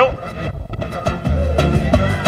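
Live pagode band music playing, the bass coming in louder about a second in.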